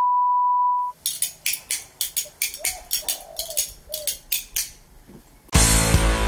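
A steady electronic beep lasting about a second, then a run of quick sharp clicks, a few a second. Near the end, loud music with guitar cuts in.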